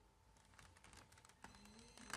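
Faint, scattered light clicks and taps of a clear plastic card-deck case being handled and turned over in the hands, with a slightly sharper click about halfway through.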